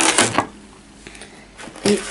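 A brief rustle and crinkle of plastic packaging as trading cards are handled, in the first half-second, followed by quiet room tone.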